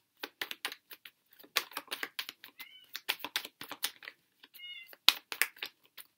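Tarot deck being shuffled by hand, an irregular patter of card clicks, while a cat gives two short, high meows, about three and four and a half seconds in, wanting into the room.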